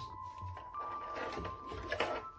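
Soft background music with held notes, one note changing a little higher under a second in, under faint low bumps.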